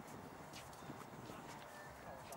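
Faint scattered footfalls and light knocks of players running on an outdoor basketball court.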